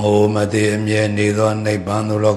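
A Buddhist monk chanting in one low male voice, each phrase held on a nearly level pitch, with a brief break near the end.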